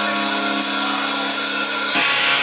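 Distorted electric guitar holding one steady chord, loud and unchanging, before the full band comes in just before the end.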